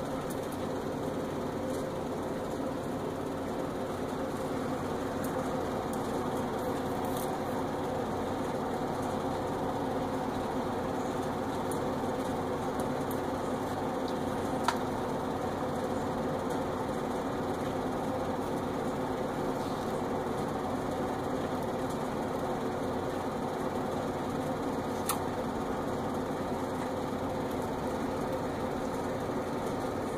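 Steady mechanical hum, with one sharp click about halfway through and a fainter one near the end.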